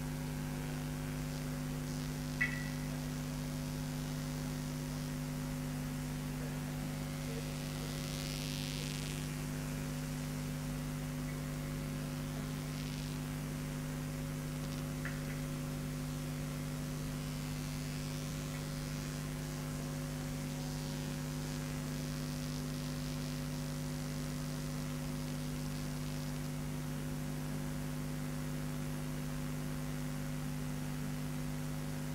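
Steady electrical mains hum picked up by the sound system, with a brief click about two and a half seconds in.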